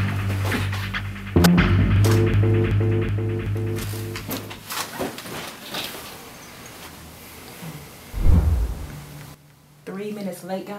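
Suspenseful film-score music: sustained low bass notes under a pulsing chord that drop out about halfway through, followed by quieter sparse sounds and one short, deep boom near the end.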